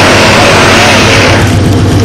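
Dodge pickup truck's engine running hard with its rear wheels spinning in deep, wet snow: a steady low engine hum under a rushing hiss that drops away about a second and a half in. The wheelspin comes from a light rear end with too little weight over the drive wheels to get traction.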